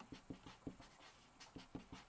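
Faint strokes of a felt-tip Sharpie marker on paper as capital letters are written: a quick run of short scratches, about five a second.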